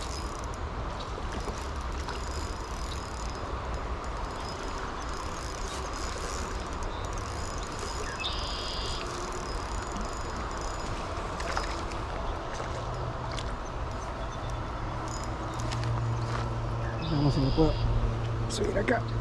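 Steady outdoor noise of river water and breeze on the microphone while a trout is played on a light spinning rod, with a short high call twice. From about two-thirds of the way in, a low steady whir with overtones builds as the spinning reel is cranked to bring the fish in.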